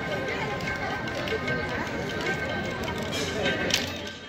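Devotional singing with held, steady instrument tones, typical of the Sikh kirtan that plays continuously at the Golden Temple, over a general crowd hum. A short sharp sound comes just before the end.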